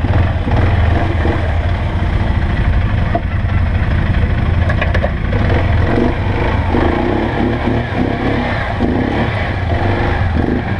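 ATV engine running close by, a steady low hum, with a pulsing, on-and-off note coming in during the second half as the throttle is worked.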